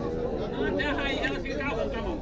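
Background chatter: several people talking at once, with no single clear voice on top.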